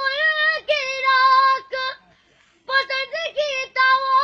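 A boy's solo voice reciting a noha, a sung mourning lament, loud and high-pitched in long held phrases with bending pitch, broken by a short pause for breath about two seconds in.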